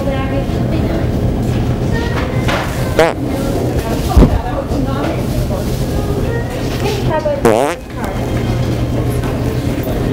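Two short, buzzy fart noises from the Pooter, a handheld fart-sound toy, whose pitch bends sharply: one about three seconds in and a longer one at about seven and a half seconds. They sound over a steady low store hum and background murmur, with a single sharp knock just after four seconds.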